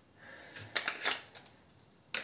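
Handling noise of a small harmonica: a quick cluster of light clicks and rattles around the middle as it is handled and set down.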